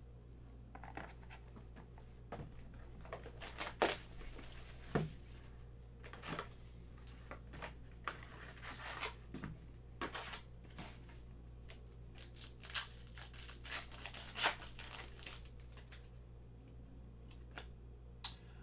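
Foil trading-card pack wrappers being torn open and crinkled by hand, in an irregular run of short, sharp rips and rustles.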